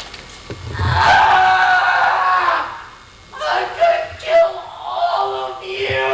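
A man's voice on stage making long, drawn-out vocal sounds without clear words, in two stretches with a short break about three seconds in.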